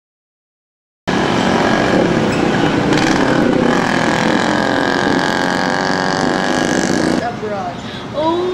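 Silence, then about a second in a loud babble of many overlapping voices starts abruptly, giving way near the end to a single nearer voice.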